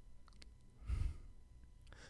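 A person's short breathy exhale or sigh into a close studio microphone about a second in, with a couple of faint clicks just before it.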